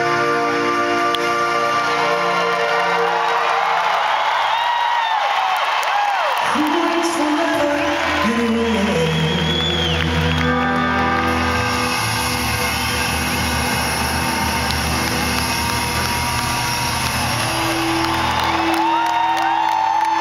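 Live rock band holding long sustained electric guitar and keyboard chords at the end of a slow ballad, with a new, deeper chord coming in about six and a half seconds in. An arena crowd whoops and cheers over the music, heard from within the audience.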